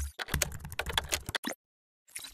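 Computer keyboard typing sound effect: a fast run of key clicks lasting about a second and a half, stopping a little before the end.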